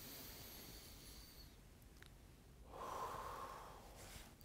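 A man taking one slow, deep breath: a faint breath in, then a louder breath out just under three seconds in. It is a deliberate recovery breath after a warm-up exercise.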